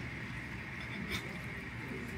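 A spoon and fork working noodles on a ceramic plate, giving a couple of faint clicks, about a second in, over a steady background hum.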